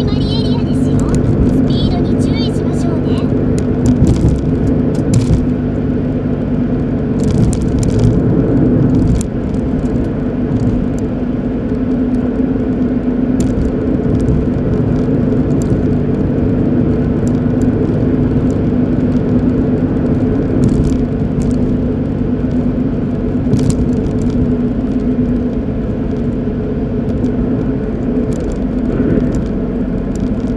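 Steady engine hum and road noise of a moving car, heard from inside the cabin.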